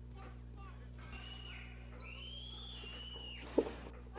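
Faint voices from a comedy clip playing quietly, then one long high-pitched cry that rises and falls, over a steady low electrical hum. A short knock comes near the end.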